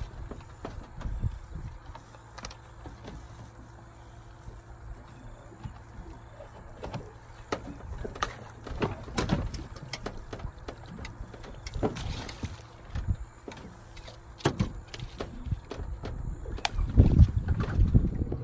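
Scattered knocks and clatter against an aluminium dinghy as a crayfish trap is hauled in on its rope and swung back over the side, the loudest knocks near the end. A low steady electric-motor hum runs underneath.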